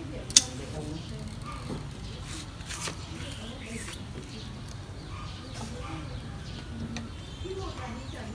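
Pruning shears cutting twigs of a fig bonsai: one sharp, loud snip about a third of a second in, then a few softer snips around the middle.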